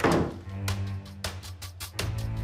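Dramatic background score: a heavy thump right at the start that dies away, then a steady percussive beat over a low held note.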